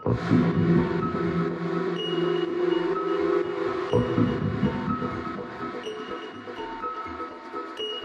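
Techno track: a dense, held low synth chord swells in sharply and is struck again about four seconds in, fading gradually, with short high electronic blips over it.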